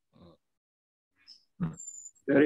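Mostly a quiet pause, broken by a faint, short throaty vocal sound just after the start and a louder throaty, croaky voice sound that begins near the end.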